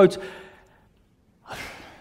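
A man's spoken word trailing off, a pause, then a breathy sigh about a second and a half in, just before he speaks again.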